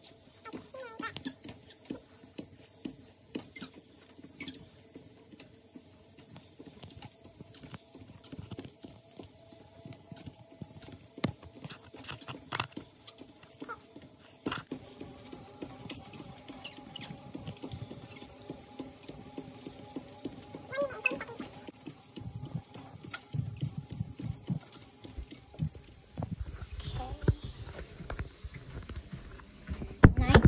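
Footsteps on a treadmill belt: an uneven patter of soft knocks as sneakers strike the moving deck. From about halfway through, a steady hum joins in.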